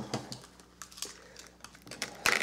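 A short laugh, then faint scattered clicks and taps as the shrink-wrapped hockey card boxes and box cutters are handled on a glass table.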